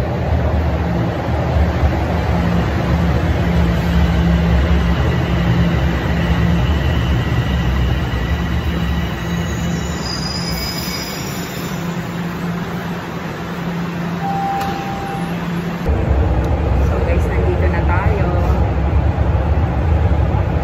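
Toronto subway train (a Toronto Rocket on Line 1) running into an underground station and braking to a stop, with a brief high squeal about ten seconds in and a short tone a few seconds later. About sixteen seconds in the low rumble comes back strongly as the train moves off.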